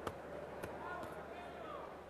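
Quiet boxing-hall ambience: a sharp knock right at the start and a second, thinner knock about two thirds of a second later, followed by faint distant shouts from the crowd.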